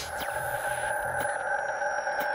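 Synthesized logo-sting sound effect: a held electronic tone of a few steady pitches ringing on after a loud hit, with faint high falling glides and a soft tick about a second in.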